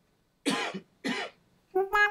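A person coughs twice, about half a second and a second in. Near the end a sustained synthesizer keyboard note starts.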